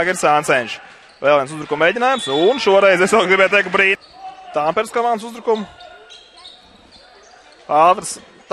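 A TV basketball commentator talking over live game sound, with a basketball bouncing on the hardwood court. Near the end the talk pauses briefly and only the quieter court noise remains.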